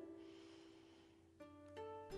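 Very faint instrumental background music: a held note fades away, then soft new notes come in about one and a half seconds in, with another shortly after.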